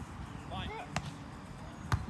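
A volleyball struck twice by players' hands in a beach volleyball rally: two sharp slaps about a second apart, the second louder.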